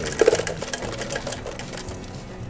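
Ice dispenser on a restaurant soda fountain dropping ice into a cup, a fast clattering rattle that is loudest in the first second.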